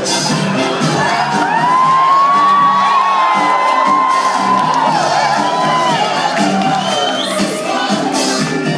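Loud music playing in a banquet hall, with the audience cheering and whooping. A long high note is held from about a second in until about six seconds.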